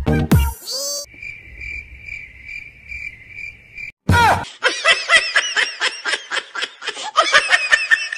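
A cricket-chirp sound effect, a high steady trill pulsing about three times a second, for about three seconds. Then, about four seconds in, high-pitched sped-up cartoon voices giggle over and over until the end.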